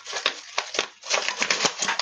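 Rapid dry crackling and rustling as hands peel the papery outer skin off an onion: a dense run of quick small cracks.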